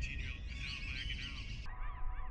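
Wild birds calling, many short arched chirps overlapping. Near the end the sound turns abruptly duller and a steady hum comes in under the calls.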